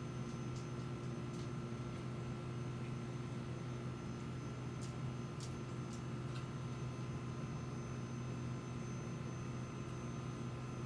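Steady low electrical hum with a faint hiss underneath, and a few faint clicks.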